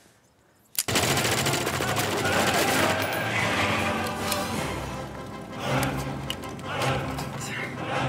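Gunfire in a film soundtrack: after a near-silent first second, a sudden loud shot and then rapid automatic fire, with music underneath.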